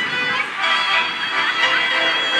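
Background music led by a violin playing held notes.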